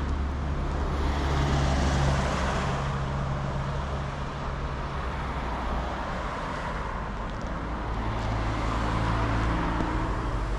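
Cars driving past: steady engine and tyre noise, with one car's engine hum in the first few seconds and another near the end.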